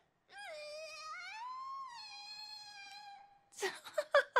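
A single high voice holds one long wailing note for about three seconds, wavering at first, then rising and settling.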